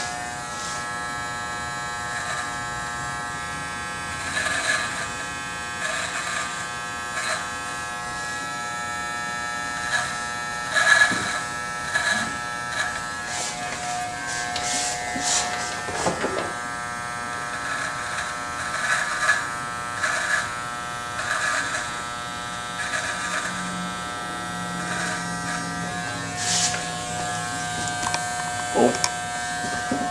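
Corded electric hair clippers running with a steady buzz, with short louder bursts every second or so.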